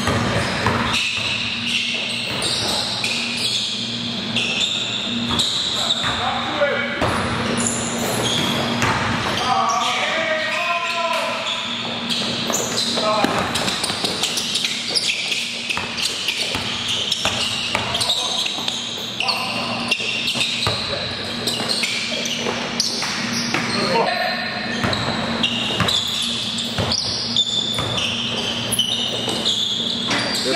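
Basketball dribbling on a gym court amid many short high sneaker squeaks and players calling out, echoing in a large hall. A steady low hum runs underneath.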